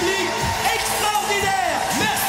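Live pop music playing at a concert, with voices singing over the band.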